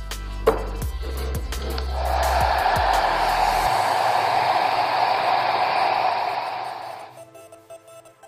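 Handheld hair dryer switched on about two seconds in, blowing steadily, then switched off near the end. It is drying the clear spray lacquer that glues a photo transfer onto a ceramic mug.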